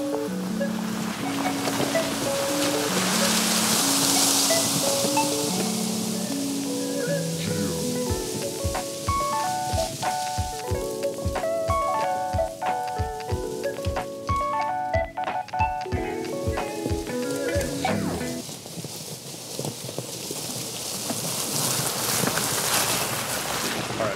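Background music: a melody of short, stepping notes, joined about a third of the way in by a steady low beat that drops out a few seconds before the end.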